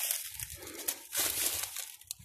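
Dry leaf litter and sticks crunching and rustling, in two louder stretches near the start and around the middle.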